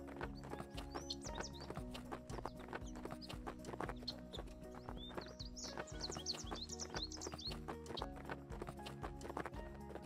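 A horse's hooves beating on arena sand in a quick, even rhythm, under soft background music with held tones.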